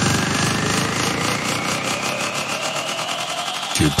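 Future house build-up: a synth riser climbs steadily in pitch over a fast, stuttering pulse. The bass thins out and drops away just before the end, where a vocal sample comes in on 'get'.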